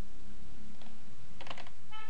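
Computer keyboard being typed: a few keystrokes, a single one just before a second in and a quick run of them about one and a half seconds in, over a steady low hum.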